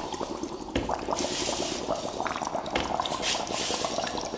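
Bubbling, gurgling liquid, like a lab sound effect. A hiss swells up over it twice, about two seconds apart.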